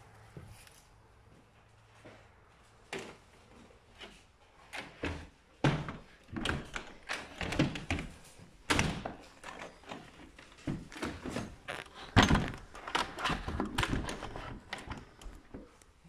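A rapid, irregular series of hard knocks and thuds, the loudest about twelve seconds in.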